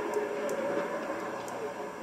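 Faint background voices of people talking, quieter than the nearby speech on either side.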